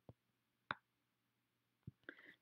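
Near silence broken by three faint clicks of a computer mouse as circles are dragged and dropped in a drawing program, the sharpest a little under a second in.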